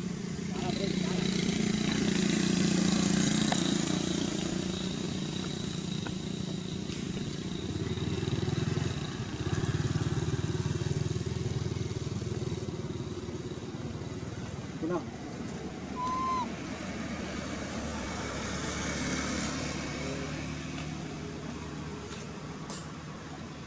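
Motor vehicle engines passing, a low steady drone that swells about two seconds in and again around ten seconds in. A short chirp sounds about three quarters of the way through.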